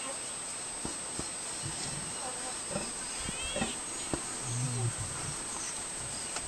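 Lions growling and snarling at close range: a lioness snarling at the male during an unsuccessful mating attempt, with short low growls and a deep, drawn-out growl about four and a half seconds in.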